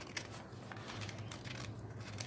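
Scissors cutting through a sheet of office paper: a run of faint, short snips.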